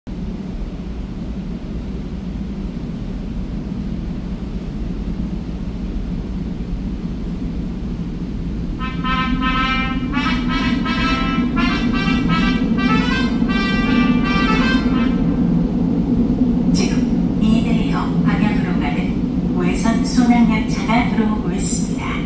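Steady low rumble of an underground subway platform that grows slowly louder as a Seoul Subway Line 2 train approaches through the tunnel. About nine seconds in, the station's train-approach chime plays over the PA for several seconds. A recorded announcement voice follows near the end.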